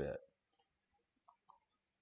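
A few faint, separate clicks of a computer mouse button as brush strokes are dabbed on with the mouse.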